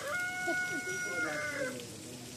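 A rooster crowing: one long call held on a steady pitch, dropping away at the end about 1.7 seconds in.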